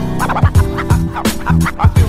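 Hip-hop instrumental beat: kick drum hits under steady sustained tones, with a short, wavering, warbling sampled sound repeating over it.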